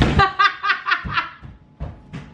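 A woman laughing hard, a quick run of short bursts that fades out after about a second. There is a low thump right at the start and another shortly before the end.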